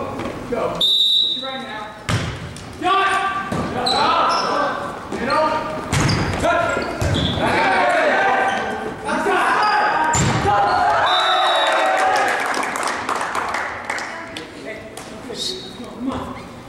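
Volleyball rally in a gymnasium: a referee's whistle about a second in, then sharp hits of hands and arms on the ball and the ball striking the floor, among players' shouted calls. A second whistle blast comes past the middle.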